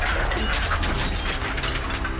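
Sword-fight sound effects: a rapid clatter of metallic clinks and knocks, with clashing steel and rattling mail, over a low steady music drone.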